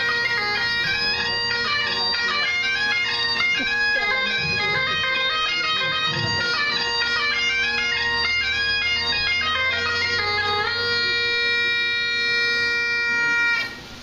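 Bagpipes playing a quick, running melody over steady drones. The tune ends on a long held note that stops abruptly about half a second before the end.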